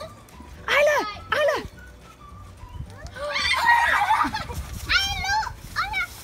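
Young children's excited shrieks and squeals: two short high cries about a second in, then a quick run of high squeals near the end, with rustling and crunching of dry leaves underfoot in between.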